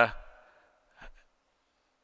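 A man's drawn-out "uh" at a lectern microphone ending and dying away in the hall's reverberation, then a pause broken by a faint, brief intake of breath about a second in.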